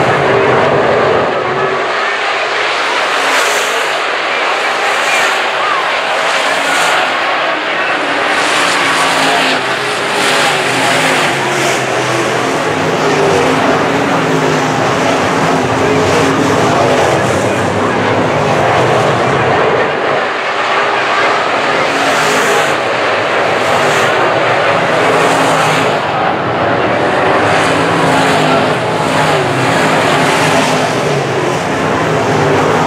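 A field of IMCA Modified dirt-track race cars with V8 engines running hard around the track. Their engines rise and fall in pitch as the cars pass one after another, and the sound is loud and continuous.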